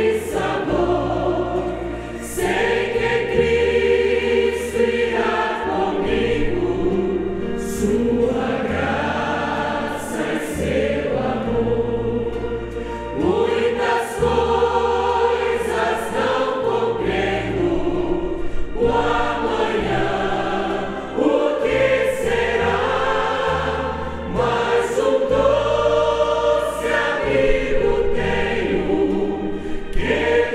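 A church congregation singing a Portuguese hymn in chorus, led by a male singer at a microphone, over instrumental accompaniment with steady held bass notes.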